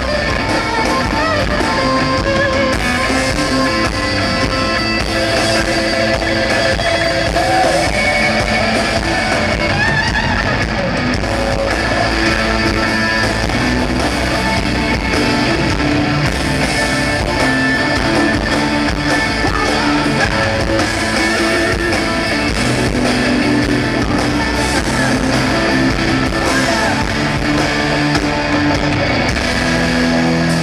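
Live rock band playing loud amplified music: electric guitar over drums and bass guitar, heard from the audience through the arena PA.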